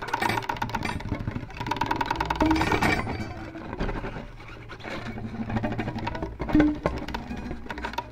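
Improvised violin played through electronic effects: a dense run of short, rapid strokes and scattered pitched tones, with a low sustained drone entering about halfway through.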